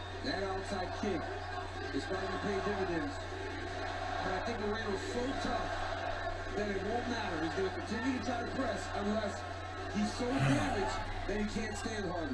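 Faint men's voices commentating from a televised fight broadcast playing in the room, over a steady low electrical hum.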